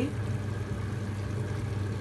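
Steady low mechanical hum with an even faint hiss over it.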